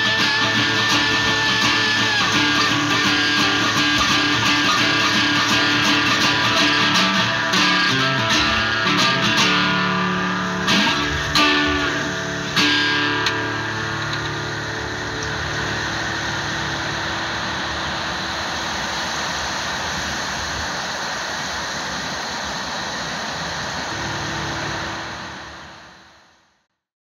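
Acoustic guitar playing the closing phrase of a piece, with three sharp struck accents about ten to thirteen seconds in. The notes then die away, leaving a steady hiss-like noise that fades out at the end.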